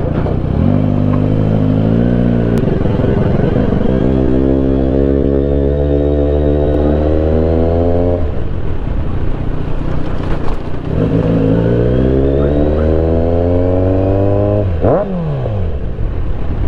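Kawasaki Z900's inline-four engine under way, pitch climbing steadily as it pulls, falling off sharply about eight seconds in, then climbing again, with a quick dip and rise in revs near the end.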